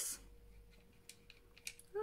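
A few faint, light clicks in the second half over quiet room tone with a faint steady hum.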